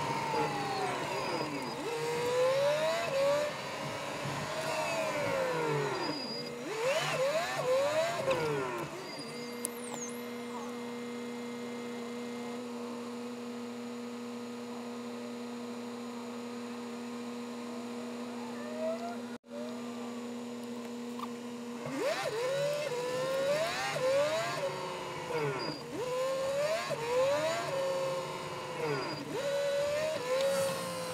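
Volvo FMX truck heard from inside the cab. Its engine note falls and wavers as it slows, then holds a steady idle for about twelve seconds while stopped at a junction. It then pulls away, the pitch rising and dropping back again and again as it goes up through the gears.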